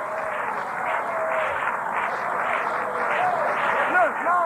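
Audience applauding, with a few scattered voices calling out, heard on an old cassette tape recording.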